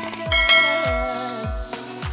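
Background pop music with a steady beat, overlaid by a notification-bell chime sound effect that rings out about half a second in and fades over about a second.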